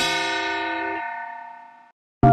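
Logo sting: a bright, bell-like chord struck once, ringing and slowly fading, with its lower notes cutting off about a second in.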